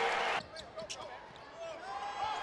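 Arena crowd noise that cuts off abruptly about half a second in. Quieter basketball court sounds follow: short squeaks and a few knocks on the hardwood.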